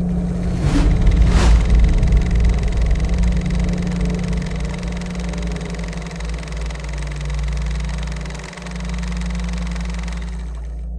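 Outro sound design: two quick whooshes about a second in, over a loud, deep low drone with a steady low hum underneath. The drone swells early, eases off, and dips briefly near the end.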